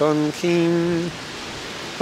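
A man singing unaccompanied in slow, held notes. He breaks off about a second in, leaving a steady hiss, and starts singing again at the very end.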